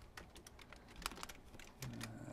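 Computer keyboard keys tapped to copy and paste lines of code: a few faint, irregular clicks, the sharpest about a second in.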